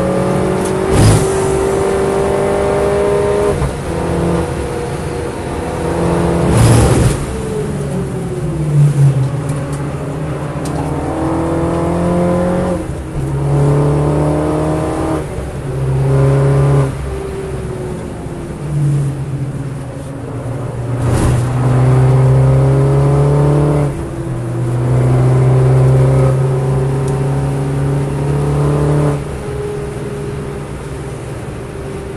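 In-cabin sound of a MINI John Cooper Works GP2's turbocharged four-cylinder engine at full race pace. Its pitch climbs through each gear, drops at each shift, and falls away under braking for corners. Three sharp thumps come through the body about a second in, about seven seconds in, and about twenty-one seconds in.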